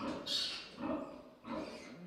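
A few faint, short animal calls in the background during a pause in speech.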